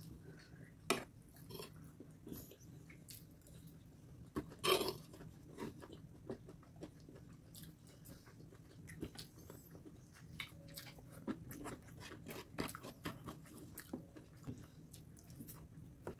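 Chewing and eating sounds of fried rice and noodles: scattered short, faint mouth clicks and smacks, with a louder one about five seconds in.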